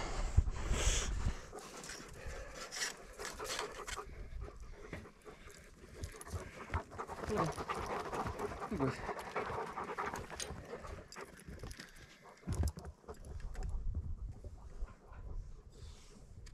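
Farm dogs panting hard close to the microphone, with a low rumble at the start and again near the end.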